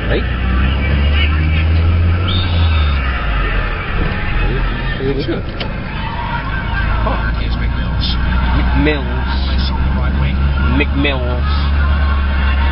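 Steady low rumble of a car cabin at highway speed, under the sound of a football match broadcast: crowd noise and the commentator's voice coming and going.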